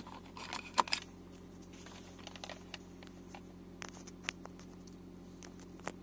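Scattered small clicks and taps of a USB car charger and its cable being handled in the centre-console power socket, with two sharper clicks in the first second, over a steady low hum. No charging chime from the phone follows: the socket is dead, its fuse blown.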